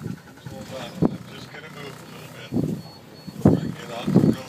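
People's voices in short, low bursts of talk, a few times.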